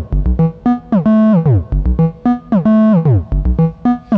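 Modular synthesizer melody sequenced by a Frap Tools USTA, looping a short phrase of notes. Portamento through the USTA's integrator is set to act one way only: the pitch glides smoothly on the steps going down, while the other steps jump.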